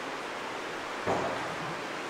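Steady hiss of room tone picked up by the lectern microphone, with a brief faint voice about a second in.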